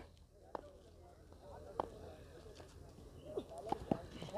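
Faint distant voices with a few soft clicks over near silence.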